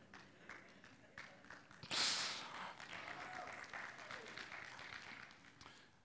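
Faint church congregation response: a few scattered claps and low murmuring, with a brief hiss-like swell about two seconds in that fades away.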